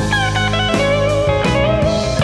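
Instrumental passage of a folk-blues rock song: a guitar lead with notes that glide in pitch over steady bass notes, with no singing.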